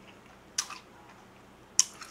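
Close-up chewing of a mouthful of sweet-and-sour pork (tangsuyuk), with two short wet mouth clicks, one about half a second in and one near the end.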